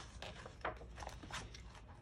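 A paper page of a picture book being turned by hand: faint rustles and a few small taps as it is turned and smoothed down, the clearest a little over half a second in.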